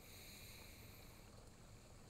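Near silence, with only the faint steady splashing of a small rock-garden waterfall fountain.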